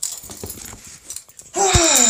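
Quiet handling scuffs and clicks, then about a second and a half in a man's long, breathy sigh, falling in pitch, with a low thud at its start.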